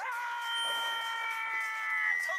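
A sustained, steady tone with several pitches from the anime's soundtrack. It starts abruptly and holds level for about two seconds.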